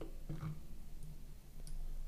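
Faint room tone with a steady low hum, a brief faint mouth sound about half a second in, and a single faint computer mouse click near the end.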